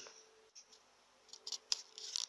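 A few small, sharp clicks and light taps from a sewing machine's bobbin case being handled, starting a little past halfway after a near-quiet first second.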